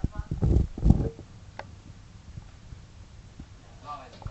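A dog and a cat play-fighting: a few loud, low, rough huffs or thumps in the first second, then quieter scuffling, with a short pitched vocal sound near the end.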